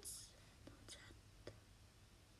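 Near silence: room tone, with a short breathy hiss at the very start and three faint ticks in the first second and a half.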